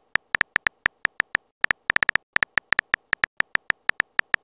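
Key-click sound effects of a texting app's on-screen keyboard as a message is typed. About six short, uneven clicks a second, with a brief pause about a second and a half in.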